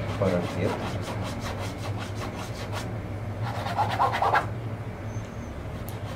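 Paintbrush scrubbing oil paint onto a canvas in quick, short, scratchy strokes, over a steady low hum.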